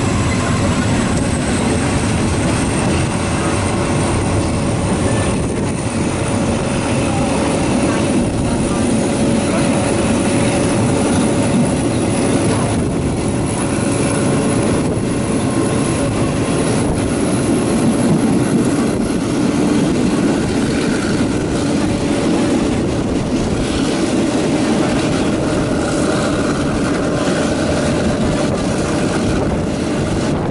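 Diesel passenger train running, heard at an open carriage window: a steady rumble of wheels and engine mixed with wind. A thin high whine rises slowly over the first half as the train pulls out and gathers speed.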